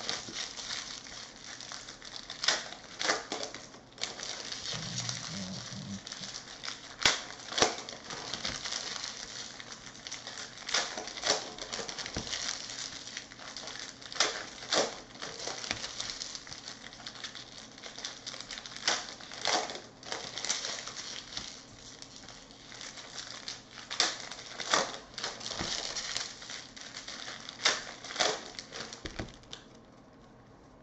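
Topps Chrome trading cards being handled and sorted by hand: a steady rustle of sliding card stock broken by frequent sharp, irregular clicks as cards are flipped and set down on stacks.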